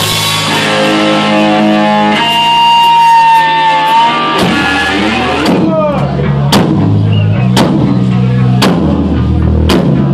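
Live heavy metal band playing: electric guitar holding long sustained notes over the bass, then drums coming in about halfway with heavy hits roughly once a second.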